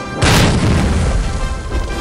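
A heavy boom of a landing impact, striking suddenly about a quarter second in, then a low rumble that fades over the next second and a half, laid over background music.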